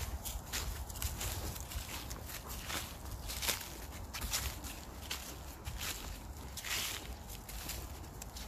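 Footsteps crunching over frost-covered grass and frozen, rutted mud in a loose, irregular series, over a steady low rumble.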